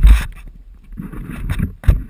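Handling and wind noise on a hand-held action camera's microphone as it is swung about: rumbling buffeting with heavy bumps at the start and again just before the end.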